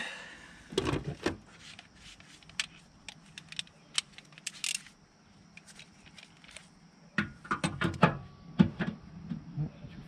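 Scattered light metallic clicks and clinks of hand tools and loose parts being handled on a diesel engine's cylinder head, with a denser run of clinks from about seven seconds in.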